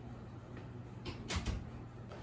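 A quick cluster of three or four sharp household knocks and clicks, about a second in, over a low steady room hum.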